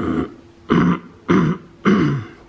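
A man coughing four times in quick succession.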